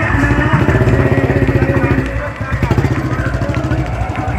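Motorcycle engine idling with a rapid, even beat, which dips briefly about halfway through, under voices.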